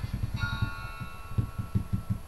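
A single plucked guitar note rings out about half a second in and fades, over a run of soft low thumps at about four or five a second.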